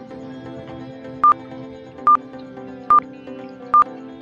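Quiz countdown timer beeping: four short high beeps, evenly spaced a little under a second apart, starting about a second in, over soft steady background music.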